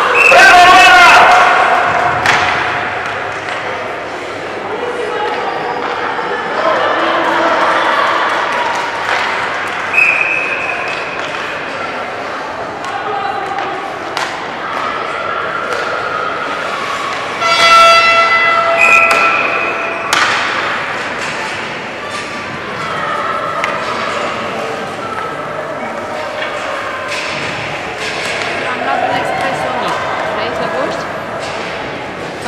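Youth ice hockey being played in an echoing arena: shouting voices, with sticks and puck knocking on the ice and boards. About halfway through, a loud held tone with several overtones sounds for a couple of seconds.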